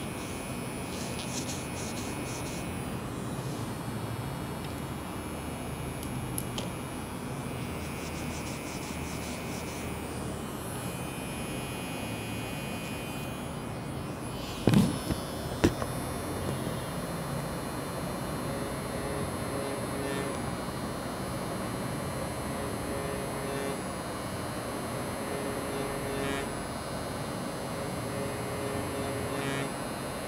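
Steady low room noise with a faint hum, broken by two brief knocks about halfway through.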